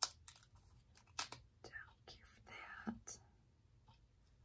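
Quiet handling of a small paper strip: a few sharp clicks and light rustles of paper, with a brief faint murmur of voice in the middle.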